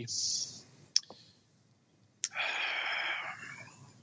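A speaker's mouth noises in a pause between words: a sharp mouth click about a second in, then another click and a breath lasting about a second that fades away.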